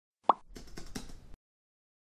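Logo intro sound effect: a short pop with a quick rising pitch, followed by about a second of faint clicking over a low hiss.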